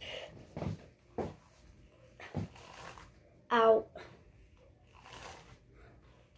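A few light knocks and rustles of things being handled in a small room, with a short voiced sound from a person about three and a half seconds in, the loudest thing here.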